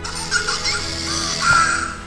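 Interactive My Partner Pikachu toy speaking through its small speaker: short, squeaky, high-pitched Pikachu voice calls, the strongest about one and a half seconds in, over soft background music.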